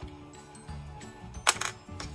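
Soft background music with steady sustained tones, broken about one and a half seconds in by a brief sharp click, then a smaller one, as the tape and clear acrylic ruler are handled on the cutting mat.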